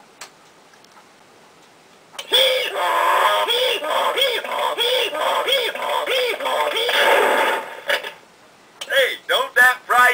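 Hee Haw talking wall clock's small speaker playing a recorded sound clip. It starts about two seconds in and lasts about six seconds, a voice-like sound that swells up and down in pitch about twice a second. A faint click comes near the start.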